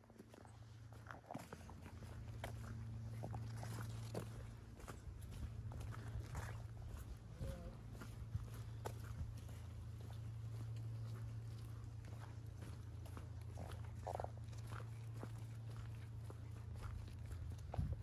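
Footsteps walking on a soft dirt and leaf-covered path, many small irregular steps. A steady low hum runs underneath.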